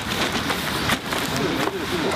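Indistinct chatter of several people outdoors, mixed with crinkling and knocking as plastic-wrapped cases of bottled water are handled and stacked.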